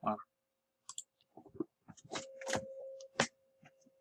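Scattered soft clicks and small knocks, with a faint steady hum through the second half.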